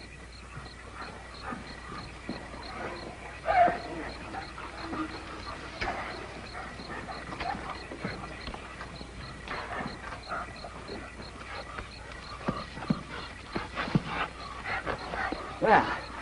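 A pack of coonhounds whining and yipping, with scattered short barks that come more often near the end.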